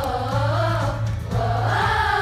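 Middle-school mixed chorus of boys and girls singing together; the sung line thins a little past the midpoint and the next phrase swells in near the end.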